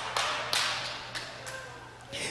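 A few scattered, irregular sharp claps echoing in a large hall.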